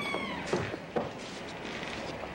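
A glass shop door's hinge squeaking as it swings open, with a drawn-out squeal falling in pitch that fades about half a second in. Two sharp knocks follow, half a second apart.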